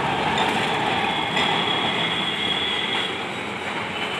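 Electric street tram rolling past on rails set in the road: a steady rumble of steel wheels on track, with a thin, high wheel squeal through most of it.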